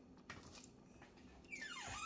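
Near-quiet kitchen room tone with a few faint ticks, then near the end a short squeak falling steeply in pitch from a lower cupboard door's hinge as it is swung open.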